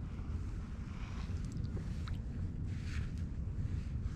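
Steady low wind rumble on the microphone over quiet water around a kayak, with a soft splash of water about three seconds in as a plaice is slipped back into the sea by hand.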